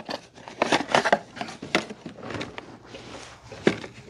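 Boxes and packaging being handled and rummaged through: a scatter of short rustles, light knocks and clicks.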